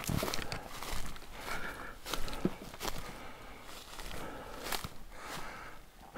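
Footsteps through undergrowth on a mossy, leafy forest floor, with brush rustling and twigs snapping in irregular steps that grow fainter as the walker moves away.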